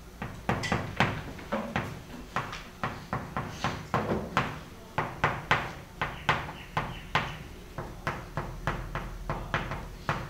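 Chalk writing on a chalkboard: an irregular run of sharp taps and short strokes, about two to four a second, as Chinese characters are written.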